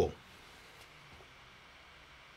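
Faint, steady air noise of the 16-inch MacBook Pro's fans spinning up under a full CPU benchmark load, with the processor pegged.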